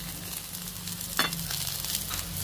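Salmon steaks and shrimp skewers sizzling on an electric griddle: a steady crackling hiss, with one short click about a second in.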